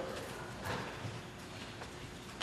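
A few scattered knocks over a low, steady background murmur in a large hall.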